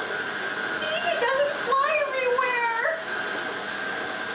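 Electric tilt-head stand mixer running at its low starting speed with a steady motor whine, mixing wet meatloaf mixture in its bowl. From about one second in to about three seconds, a high voice wavering in pitch sounds over it.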